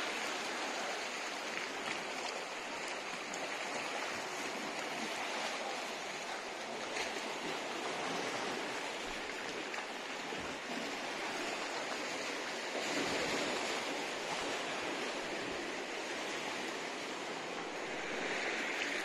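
Calm sea lapping and washing over a rocky shoreline of layered red stone. A steady wash of small waves with slight swells.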